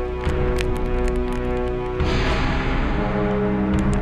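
Live metal band's amplified guitars holding a droning, distorted chord, with a few cymbal and drum hits in the first half; about two seconds in the chord changes and rings on.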